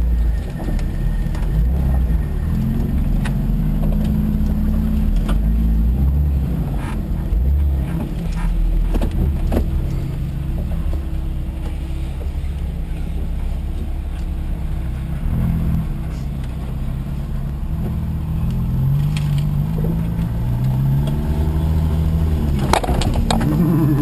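Jeep engine running at low revs as it crawls over rough ground, heard loud and close through the hood, its pitch rising and falling with the throttle. Several sharp knocks and clatters break in, the loudest a few seconds in and around the middle.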